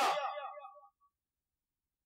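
A man's voice trailing off at the end of a sentence through a microphone, fading out within the first second, followed by complete silence.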